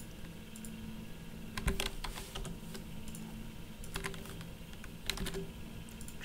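Computer keyboard keystrokes: scattered taps in small clusters, the Escape key among them, over a faint steady hum.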